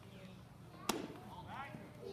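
A pitched baseball striking at home plate: one sharp crack about a second in, with a short ring after it.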